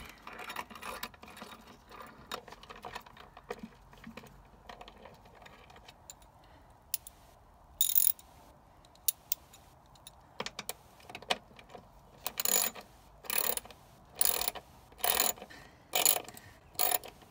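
Ratchet wrench and socket undoing the wiper motor bracket bolts. Light metallic clicks come at first, then near the end a run of short ratcheting strokes about a second apart.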